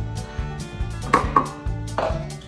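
Stainless steel milk pitcher and cup being set down: two quick metallic knocks with a short ring just past halfway, and another at the end, over background music with a steady beat.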